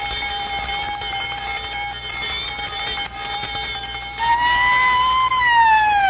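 Cartoon alarm sounding as a steady, unbroken tone. About four seconds in, a louder police siren joins; it holds, then slides down in pitch.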